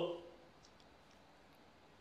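Near silence after the trailing end of a spoken 'oh', with a few faint small clicks about half a second in.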